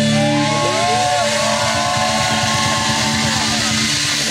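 Live rock band with violin holding a sustained chord, with high notes sliding and swooping up and down over it while the drums are silent.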